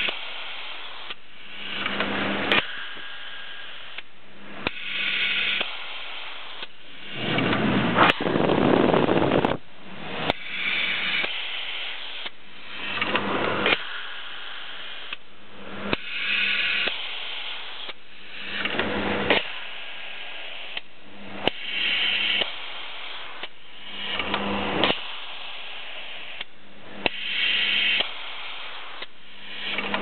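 Ketan KPA400 print-and-apply pallet label applicator cycling. Its print engine and pneumatic applicator make bursts of mechanical and air noise with sharp clicks, repeating about every two to three seconds over a steady low hum.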